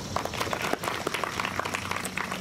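Audience applauding, a patter of many separate hand claps.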